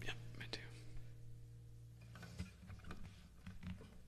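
An acoustic guitar's strings ringing softly after a strum and fading out over about two seconds, followed by a few faint clicks of the guitar being handled.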